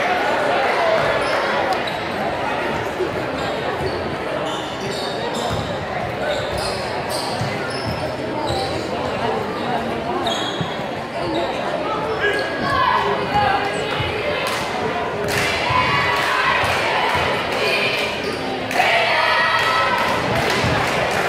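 Basketball bouncing on a gym's hardwood floor, several separate bounces, over crowd chatter and voices echoing in the hall. The voices grow louder near the end.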